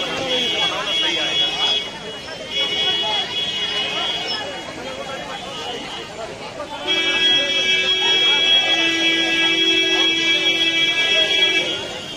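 Vehicle horn honking over crowd chatter: two blasts of about two seconds each, then a louder, steady blast of about five seconds starting about seven seconds in.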